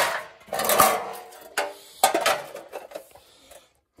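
Sheet-steel sill repair panels knocking and clanking together as they are handled and fitted against each other: several sharp metallic knocks with a short ring, the loudest in the first second, dying away after about two and a half seconds.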